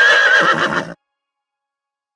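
A horse's whinny sound effect: one high, wavering neigh that rises in pitch and lasts about a second, then cuts off abruptly.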